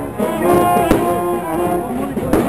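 Brass band playing a melody, with trombones and trumpets prominent. A single sharp crack cuts through about a second in.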